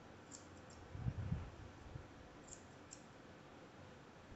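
Grooming shears snipping along the edge of a dog's ear: a few faint, short clicks of the blades, shears the groomer thinks are getting a little dull. A couple of soft low thumps come about a second in.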